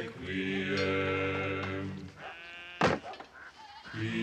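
Men's voices chanting a slow Latin plainchant in unison until about two seconds in, the last note sliding up. Then a single sharp wooden thunk of a board struck against a monk's forehead.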